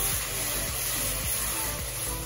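Background music over the sizzle of chopped tomatoes and onions frying in oil as they are stirred in a pot.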